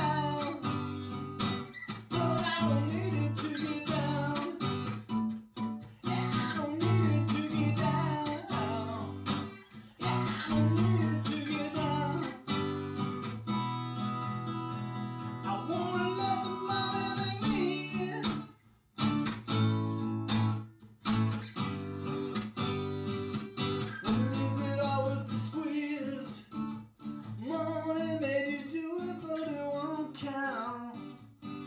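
Solo male vocal singing over a strummed acoustic guitar, with a couple of brief pauses between phrases late in the song.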